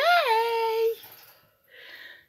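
A woman's voice drawing out a long, sing-song "yay", its pitch rising then held level for about a second, followed by a brief faint hiss near the end.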